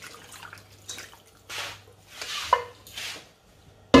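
Turkey stock poured from a saucepan into a pot of stew, splashing in a few surges with a clink partway through. A sharp knock near the end is the loudest sound.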